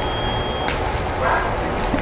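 A ZVS flyback driver running, with a thin high whine; about two-thirds of a second in, a high-voltage arc strikes at the flyback output and a steady harsh hiss sets in. The arc loads the driver heavily, pulling about 7 A from the 12 V battery.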